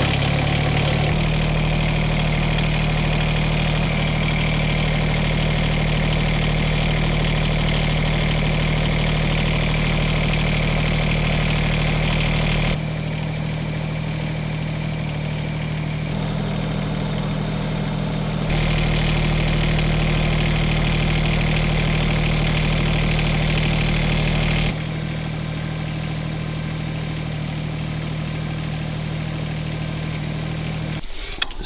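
Kubota tractor's diesel engine running at a steady idle just after starting. The level drops a little about thirteen seconds in, comes back up near nineteen seconds, and drops again about twenty-five seconds in.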